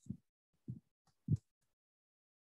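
Three soft, short low thumps, evenly spaced about half a second apart.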